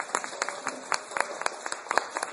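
Audience applauding, with separate hand claps heard in quick succession.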